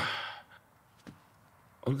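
A person sighing: one breathy exhale that starts sharply and fades within about half a second.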